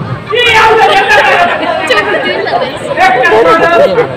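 Speech only: an actor speaking stage dialogue, loud and continuous.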